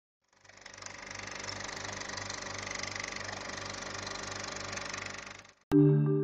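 A steady noisy hiss over a low hum that pulses about two to three times a second, fading in over the first second and dying away about five and a half seconds in. A moment later, louder marimba-like mallet music starts abruptly.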